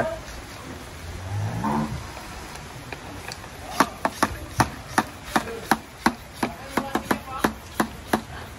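Hand pump of a plastic pressure sprayer being worked to build pressure in a homemade fogger. It gives a sharp regular click on each stroke, about three a second, starting about halfway through.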